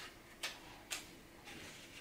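Three faint, short clicks about half a second apart over quiet room tone.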